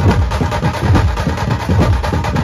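Dhumal band drumming: large barrel drums beaten with sticks and hand-held drums played together in a fast, driving rhythm, with deep drum hits that slide down in pitch.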